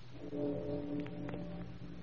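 Short brass music sting: a held horn chord that comes in just after the start and fades about halfway through, with a few light clicks.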